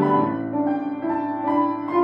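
Upright piano played four hands as a duet, sustained chords under a melody, with new notes struck about twice a second.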